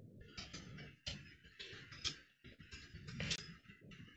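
Computer keyboard being typed on, an irregular run of key clicks with a few louder strokes, over a low steady hum.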